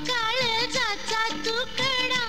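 A Marathi film song playing: a high, ornamented melody line that bends and wavers in pitch over steady lower accompaniment notes.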